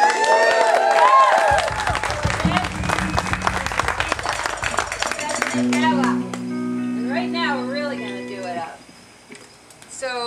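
Small audience clapping and whooping in response to a call for applause, with laughter at the start. About five and a half seconds in, a held chord on an instrument sounds under voices and stops about three seconds later.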